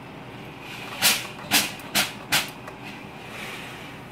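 Hamilton Beach steam iron spitting four short bursts of steam and water, starting about a second in, over a faint steady hiss. This is a cleaning flush: the bursts push out dark mineral deposits left by hard water.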